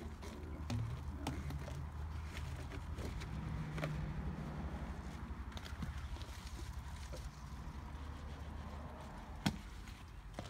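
Scattered clicks and knocks of an RV sewer hose and its plastic bayonet end fittings being handled and set down, with one sharp click near the end, over a low steady rumble.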